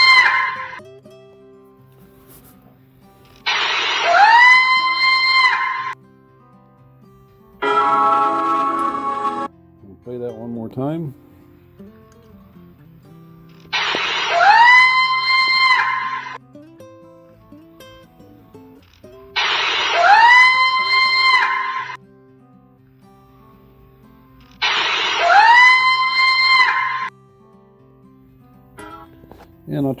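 Juvenile barred owl screaming: four long screams, each rising in pitch and then holding for about two seconds, spaced several seconds apart, with the tail of another at the very start. An aggressive call, to the narrator's mind, and one often mistaken for a Bigfoot scream.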